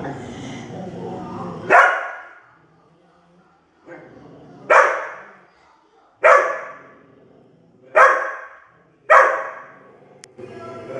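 Dog growling low, then five sharp, loud barks spaced one to three seconds apart.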